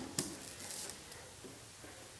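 A sharp click about a fifth of a second in, then faint rustling as a small rubber hand brayer is worked over the tacky inked printing plate.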